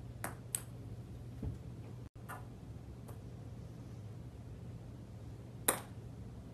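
Sharp clicks of golf balls being chipped: club-on-ball strikes and balls knocking into other balls. There are a few of them, spaced a second or more apart, and the loudest comes near the end, over a steady low hum.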